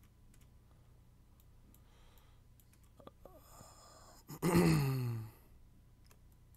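A man sighing once, a breathy voiced sigh falling in pitch and lasting about a second, near the end. Before it come a few faint mouse clicks.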